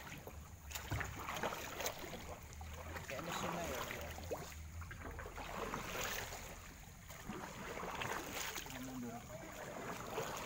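Irregular rustling, scuffing and knocks from a handheld camera carried by someone walking, with faint murmured voices now and then.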